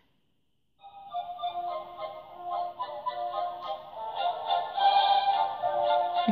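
My Enchanted Mirror talking toy playing a short electronic tune from its built-in speaker. It starts about a second in, after a moment of silence.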